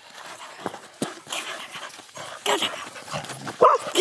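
Border collie barking once, short and loud, near the end, with a few brief rustling noises before it.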